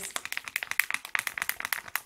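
Paper-backed printable fabric sheet crinkling as its corner is rubbed and flexed between the fingers to split the paper backing from the fabric: a fast, continuous run of small crackling clicks.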